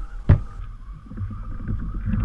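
Open-air sound from a kayak drifting in current and wind: low wind rumble on the microphone and faint water noise against the hull, with one sharp knock just after the start.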